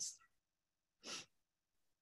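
Near silence in a pause between sentences, broken about a second in by one short, soft intake of breath by the woman speaking.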